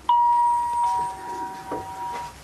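Two-note ding-dong doorbell chime: a higher note, then a lower note about three-quarters of a second later, both ringing on and fading away.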